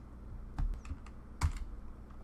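Typing on a computer keyboard: a handful of separate keystrokes, the loudest about one and a half seconds in.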